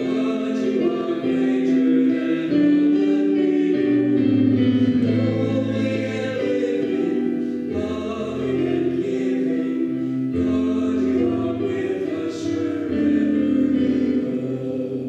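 Choir singing a hymn, with long held notes.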